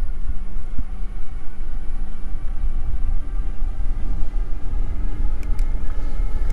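Wind buffeting the microphone and tyre rumble from an electric bike riding on a paved path, a loud, uneven low rush with a faint steady hum beneath it. A few light clicks near the end as the gears are shifted.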